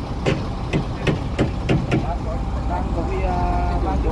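Truck engine idling with a steady low rumble. Several sharp knocks sound during the first two seconds, and a man's voice comes in near the end.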